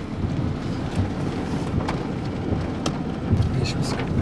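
Thunderstorm sounds: a steady low rumble with rain, and a few sharp ticks.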